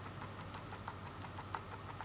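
Faint handling noise of a small plastic toy house being turned in the hands, with a few light clicks over a low steady hum.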